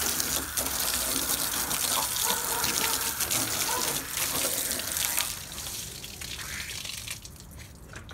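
Garden hose spraying a stream of water onto the truck's bare sheet metal and chrome bumper, splashing. The spray stops about five seconds in.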